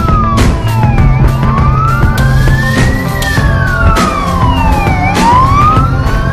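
Fire engine siren wailing, its pitch sliding slowly up and down with about two seconds rising and two falling, over background music.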